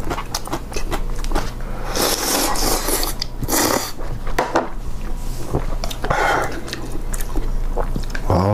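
Close-miked eating sounds: a person chewing with wet mouth clicks and loudly slurping spicy ramen broth, with the loudest slurps about two and three and a half seconds in.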